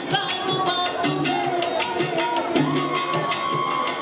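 Live salsa band playing, its percussion keeping a steady, evenly spaced beat over moving bass notes. A long held note comes in a little past halfway and holds to the end.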